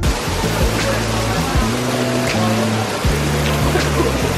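Heavy rain pouring down on a paved street: a dense, steady hiss, with background music playing under it.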